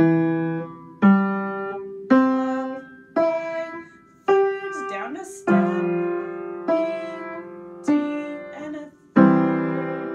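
Upright piano playing a slow beginner piece, one note struck about every second and left to ring and fade. The notes climb in skips for the first few seconds, then step back down.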